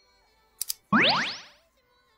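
An editing sound effect: two quick clicks, then a pitched tone sweeping steeply upward for about half a second, sounding as the object sent by the soulmate arrives.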